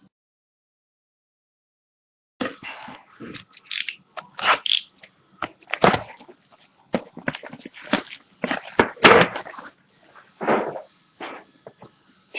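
Plastic shrink-wrap crinkling and tearing as it is pulled off a metal trading-card tin, a dense run of irregular crackles and clicks starting about two seconds in.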